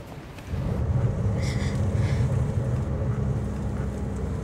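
Steady low engine and road rumble heard from inside a moving car, coming in suddenly about half a second in, with a couple of short breathy sobs over it.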